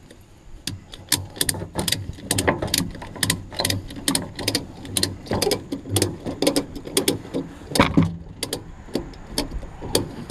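Ratchet tie-down strap being cranked tight, its pawl clicking in quick runs of several clicks a second as the handle is worked back and forth, starting about a second in.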